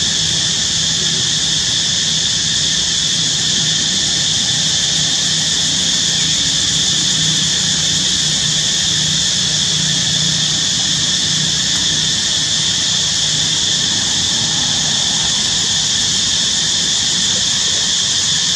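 A loud, steady hiss with a low hum underneath, unchanging throughout.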